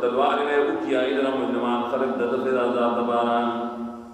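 A man chanting a Quranic verse in melodic recitation, with long held notes, fading out near the end.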